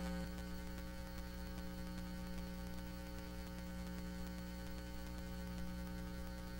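Low, steady electrical mains hum with a ladder of overtones, heard in a gap of dead air in a broadcast recording.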